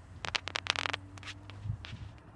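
Footsteps crunching on a gritty tarmac forecourt: a quick cluster of scraping clicks in the first second, then another near the end, over a faint steady low hum.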